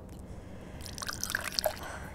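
A small amount of liquid poured from one glass test tube into another, trickling and dripping in small drops from about a second in.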